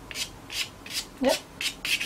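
Pastel pencil scratching across sanded Fisher 400 pastel paper in short, quick strokes, about three a second, laying in fur.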